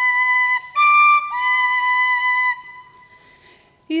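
Tin whistle playing three notes, the middle one higher and the last one held, which stops about two and a half seconds in. It is a singer sounding out her starting pitch before singing unaccompanied.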